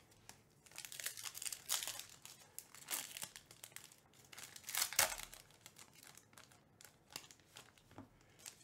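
Plastic trading-card pack wrapper being torn open and crinkled by hand, in a series of short crackly bursts, the loudest about five seconds in.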